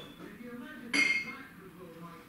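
A hard object clinks once about a second in and rings briefly, as things are moved about while a bathroom is cleaned.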